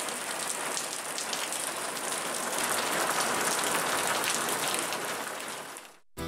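Steady patter of dripping water, like light rain, from thawing snow on a wet street; it fades out near the end.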